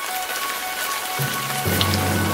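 Breaking-news title sting: a steady hiss with a few held high tones, joined by deep held bass notes a little past halfway.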